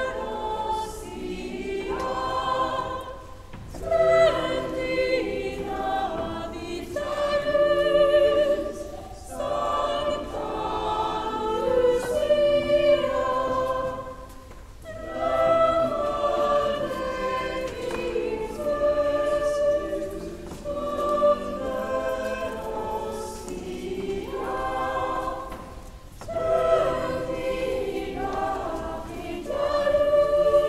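A choir of girls' voices singing a song in phrases, with short dips between phrases every few seconds.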